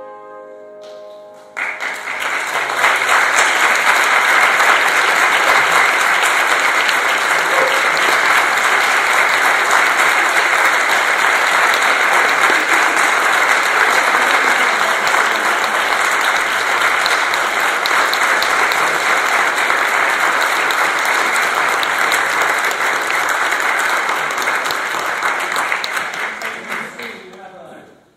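Audience applauding, breaking out about a second and a half in after a short hush and holding steady.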